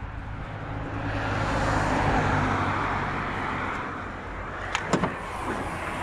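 A passing vehicle, its road noise swelling to a peak about two seconds in and then fading away, over a steady low hum; a few sharp clicks near the end.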